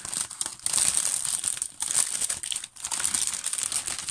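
Clear plastic packaging sleeve crinkling and rustling as hands work to open it, going on and off with brief pauses about two and three seconds in.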